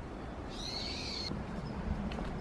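A single high, slightly arching whistled bird call lasting under a second, cut off suddenly about a second and a quarter in, over a steady low rumble.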